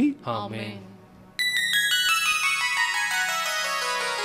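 The last of a man's spoken words, then about a second and a half in a run of bright, harp-like notes on an electronic keyboard, stepping downward one after another and left ringing.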